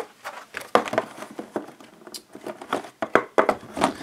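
Hands handling a cardboard board-game box and its paper contents: a run of short taps and knocks with light rustling of cardboard and paper.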